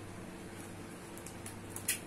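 A steady low background hum, with one short, sharp click near the end.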